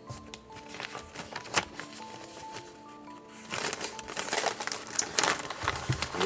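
Packaging wrap crinkling and rustling as it is peeled off by hand, starting about three and a half seconds in. Soft background music with held notes plays throughout.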